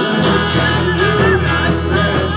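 Live rock band playing: electric guitars, bass guitar and drum kit, with a steady drum beat and a low bass note coming in just after the start.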